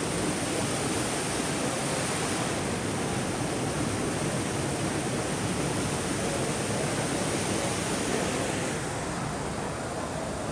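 Rain Oculus indoor waterfall: a thick column of water falling two storeys from an acrylic bowl and splashing into the pool below, a steady rushing sound. It turns slightly duller near the end.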